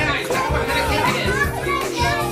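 A group of young children calling out and chattering over one another, with music playing in the background.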